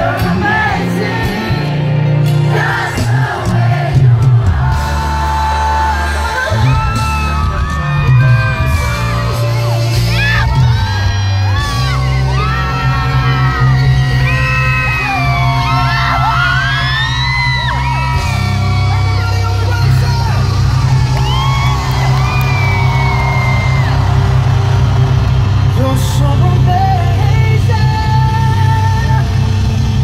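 Live pop band playing in a stadium while the crowd sings the chorus along with it, over a steady heavy bass. A lead singer's voice slides up and down in gliding runs through the middle, with whoops and shouts from the crowd.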